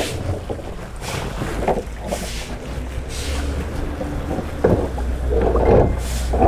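A large plastic tub being tipped onto its side and shifted on concrete: scrapes and knocks of the plastic, loudest near the end, over a low steady rumble.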